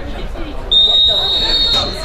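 Referee's whistle blown once, a long, steady high note starting about a second in and rising slightly in pitch, stopping play for an offside, with players' and spectators' voices behind it.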